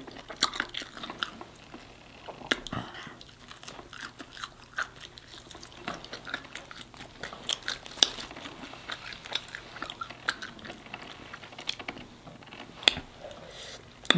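A person chewing and biting crispy fried food, giving irregular wet clicks and crunches, with a sharper crunch near the end.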